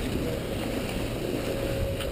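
Steady rush of wind over a GoPro's microphone as a skier glides down a groomed slope, with the low hiss of skis sliding on packed snow beneath it.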